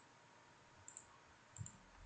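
Near silence with a couple of faint computer mouse clicks, about a second in and again near the end.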